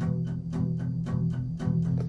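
Acoustic guitar strummed in a quick, even rhythm with no voice over it, the chord ringing steadily.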